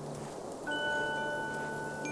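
A single bright chime note struck about two-thirds of a second in, ringing on with clear overtones over a steady low ambient hum.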